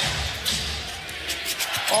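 Basketball dribbled on a hardwood court: a few sharp, irregular bounces over the steady din of a large indoor arena crowd.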